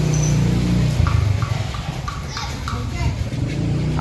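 A motor scooter passing close by in a narrow street over a steady low rumble, with a few short faint chirps and distant voices in the middle.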